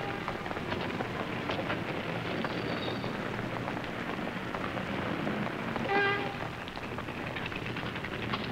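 City street ambience: a steady, crackly wash of traffic noise with a short horn-like tone about six seconds in.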